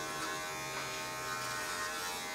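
Electric hair clippers running with a steady buzz as they cut hair.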